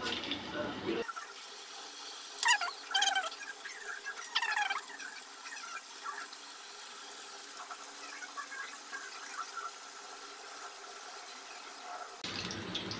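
Chicken pakodi batter pieces frying in hot oil, a steady sizzle. A few short high-pitched squeals stand out between about two and five seconds in.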